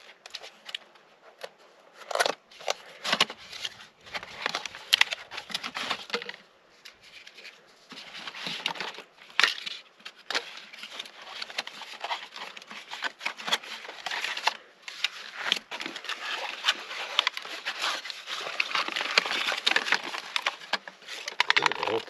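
Cardboard stove packaging being opened by hand: a box flap pulled open and cardboard inserts slid out, with rustling, crinkling and scraping. Scattered clicks and rustles come first, and the handling grows busier and more continuous about a third of the way in.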